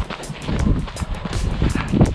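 Wind buffeting the microphone of a handheld camera carried by a runner: a steady low rumble with uneven gusty bursts.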